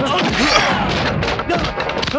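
Film fight sound effects: several heavy thuds of blows and a body falling, the loudest about half a second in, over shouting and background music.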